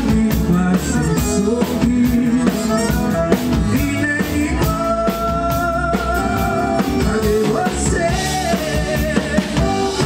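Live forró band playing: button-free piano accordion, acoustic guitar, electric bass and drum kit, with a male singer at the microphone. A long note with vibrato is held about halfway through.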